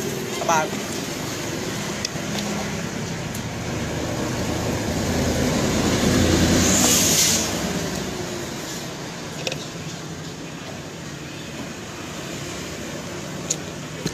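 A road vehicle passing close by: its noise builds over a few seconds, peaks about halfway through with a brief hiss, and fades away again, over steady street traffic background.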